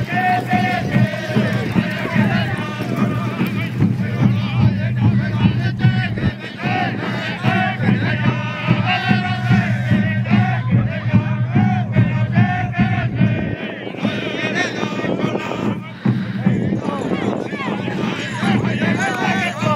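Apache ceremonial songs sung by several voices together, over the voices of the crowd.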